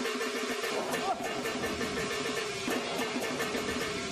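Traditional Vietnamese theatre accompaniment for a stage action scene: fast percussion strokes under a short melodic figure repeated several times a second.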